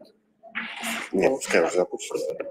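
Indistinct talk in a room: a short hushing noise about half a second in, then a voice speaking.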